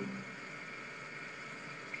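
Quiet steady hiss of room tone, with no distinct event.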